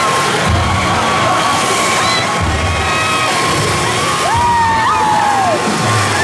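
Upbeat parade music with a steady bass beat plays under a crowd cheering and shouting. A long, gliding high cry rises over it about four seconds in.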